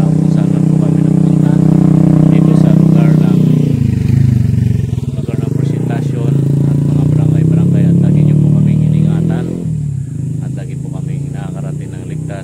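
A motorcycle engine running close by, a steady drone whose pitch dips briefly about four seconds in, then dropping away suddenly near the end.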